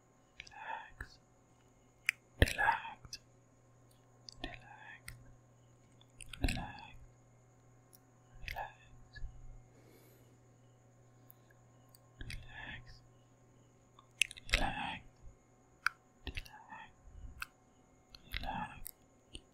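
Close-miked, unintelligible whispering and mouth sounds: short breathy whispers about every two seconds, mixed with sharp wet mouth clicks and smacks.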